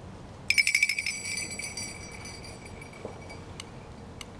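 High metallic ringing: about half a second in, a quick run of rapid strikes, after which the tone rings on and fades over the next couple of seconds.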